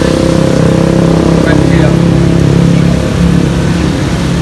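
A motor vehicle engine idling steadily nearby, over the hiss of rain falling on wet pavement.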